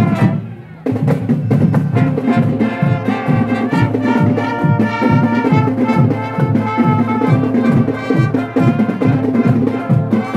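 School marching band playing: trumpets, mellophones and euphoniums over marching drums. The music drops away briefly at the start and the full band comes back in just under a second later, with a steady drumbeat.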